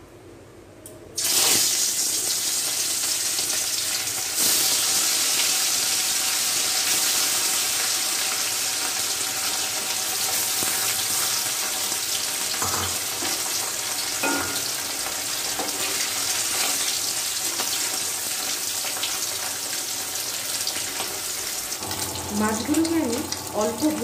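Pieces of rui (rohu) fish frying in hot mustard oil in a steel kadai. A loud sizzle starts suddenly about a second in as the fish goes into the oil, grows louder again a few seconds later, and then continues steadily.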